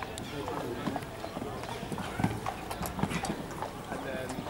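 Hoofbeats of a show-jumping horse cantering across a sand arena, a run of short dull beats, under the chatter of voices.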